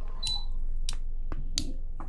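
Steady low electrical hum with a few short, sharp clicks scattered through it.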